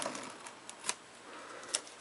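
Knife cutting the packing tape on a cardboard box: faint scratching with a few sharp clicks, the loudest about a second in and another near the end.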